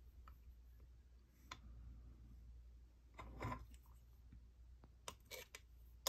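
Faint handling sounds of polymer clay work: a few soft taps and clicks as a thin clay snake is set down on a sheet of clay on the work board, one about a second and a half in, a small cluster around three and a half seconds and another near the end.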